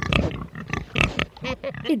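A pig grunting several times in quick succession.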